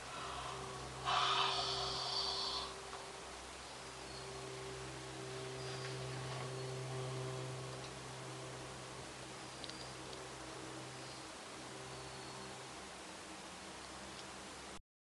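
Steady low hum inside a moving cable car gondola as it runs along the cable, with a short, louder rushing noise about a second in that lasts under two seconds.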